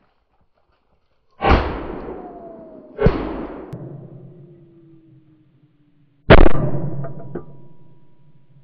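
Three shotgun shots, each followed by a long echoing decay: two about a second and a half apart, then a louder third about three seconds later.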